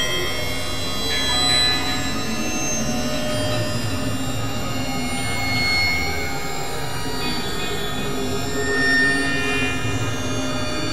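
Dense experimental electronic mix: several music tracks layered at once into a steady drone of many overlapping sustained tones, with high squealing notes over a low rumble.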